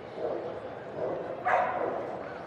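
A dog barking a few times, about a second apart, the last and loudest bark near the end.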